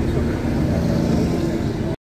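Steady engine and road noise heard inside a moving vehicle's cabin, with a voice briefly saying "ya, ya" at the start. The sound cuts off abruptly at the end.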